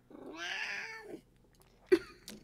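A domestic cat meowing once, a drawn-out call of about a second that rises and then falls in pitch. A short, sharp knock follows near the end.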